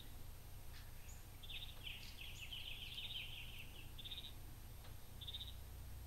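A faint bird trill: a rapid run of high notes lasting about two seconds, followed by two short bursts of the same trill, over a steady low background hum.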